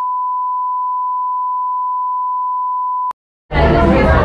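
A steady electronic beep, a single pure high tone held for about three seconds, that cuts off with a click. After a brief silence, the noise of a room with voices and music begins near the end.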